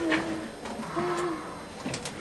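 A person's voice making two short, low hums or murmurs, the second about a second in, with a few faint clicks.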